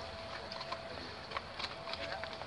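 Running noise inside a moving passenger train carriage: a steady rumble of the wheels on the track, with a few light clicks and a faint steady whine.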